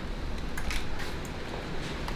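Low steady room noise with a couple of faint clicks, one about a third of the way in and one near the end.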